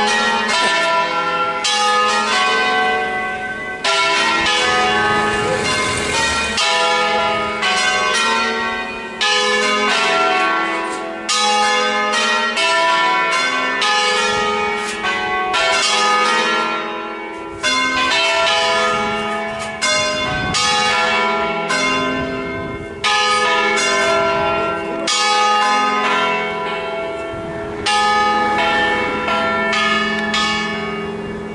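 Church tower bells ringing a solemn concerto: several tuned bells struck one after another in melodic patterns, their tones overlapping and ringing on, with fresh loud strikes every couple of seconds.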